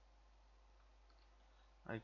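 Near silence with a faint computer mouse click about a second in, as a line of code is selected; a man's voice starts right at the end.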